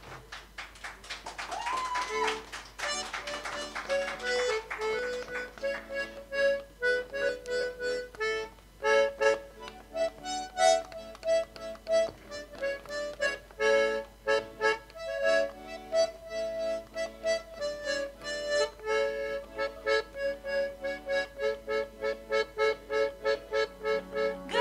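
Accordion playing a lively instrumental introduction to a song in short, rhythmic chords and melody notes, starting about a second in.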